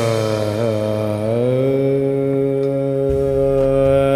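Background score: a long, held chanted vocal note in the manner of a mantra, over a steady low drone.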